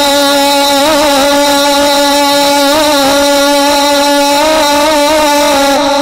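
A man's voice holding one long sung note of a naat through a microphone, wavering slightly in pitch, then breaking off near the end.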